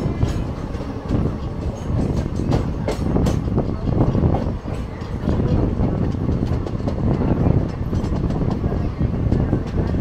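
Passenger train running along the track: a steady rumble with irregular clacks and knocks from the wheels and running gear.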